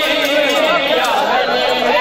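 Men's voices reciting a noha, a mourning lament, amid the chatter of a large crowd of mourners, steady and unbroken.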